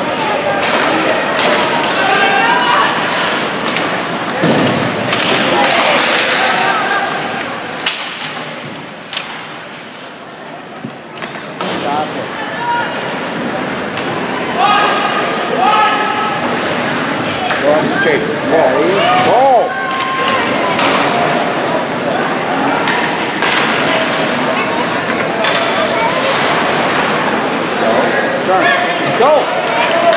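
Indistinct chatter and shouts from spectators at an ice hockey rink, with scattered sharp thuds and bangs of the puck, sticks and players hitting the boards and glass.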